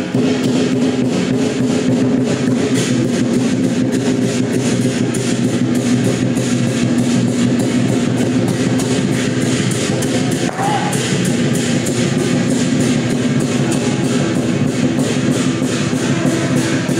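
Lion dance percussion: loud drums and cymbals beating a steady rhythm, with a held tone running underneath.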